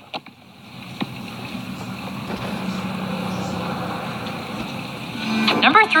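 A steady hiss with a low hum beneath it, growing slightly louder, with a single click about a second in.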